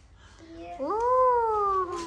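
A child's high, drawn-out "ohh" exclamation that rises and then slowly falls in pitch, starting just under a second in.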